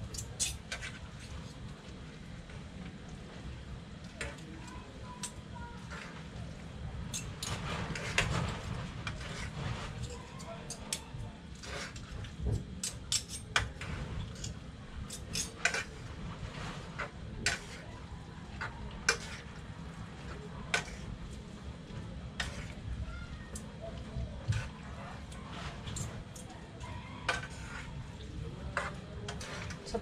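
Utensils clinking and scraping against a metal pan as pancit noodles are tossed and mixed, in irregular sharp clicks over a steady low rumble.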